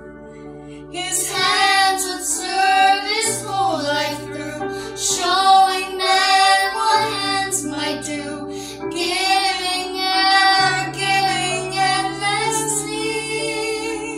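A young girl singing a slow song with vibrato over a backing accompaniment of sustained low notes. The voice comes in about a second in after a short pause and trails off near the end.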